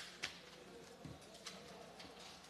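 Quiet meeting-room ambience with a few light clicks and paper rustles, including a sharp click at the start and another about a second and a half in, over a faint murmur of background voices.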